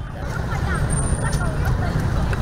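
Street ambience: a steady rumble of road traffic with faint, indistinct chatter of distant voices.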